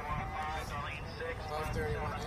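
Indistinct speech with music behind it, over an arena's public-address system.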